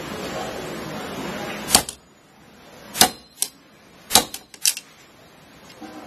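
Sharp, hard clacks of a modified-nylon tactical belt clip being knocked about in a strength test: four loud strikes and a couple of lighter ones, spread over the last four seconds after a short stretch of soft handling noise.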